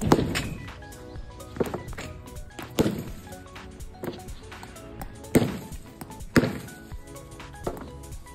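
Hard-plastic cricket bat striking a tennis ball, several sharp whacks a second or more apart.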